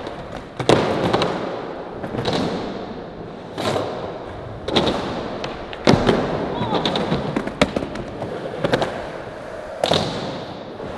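Skateboard rolling on a hard surface, broken by sharp cracks of tail pops and board landings, about ten in all, roughly one a second.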